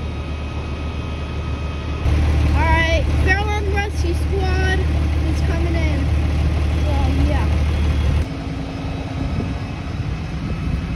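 Fire truck engine idling with a steady low rumble, louder from about two seconds in until near the end, with people talking in the background.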